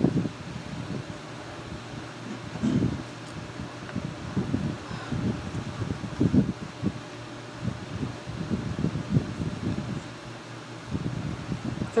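Room tone with a steady ventilation hum, broken by soft, irregular rustles and bumps as the pages of a paperback are turned.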